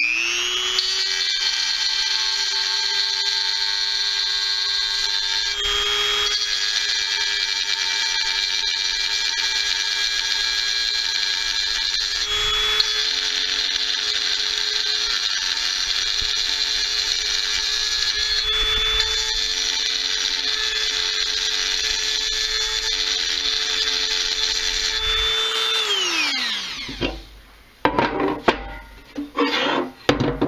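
Dremel rotary tool with an eighth-inch ball-nose carbide end mill running at high speed, a steady high whine, as it grinds out a crack in a two-stroke dirt-bike crankcase half to cut a channel for a weld. A few short scrapes break in as the bit bites. About 26 seconds in, the tool is switched off and winds down with falling pitch, followed by handling clatter of the case.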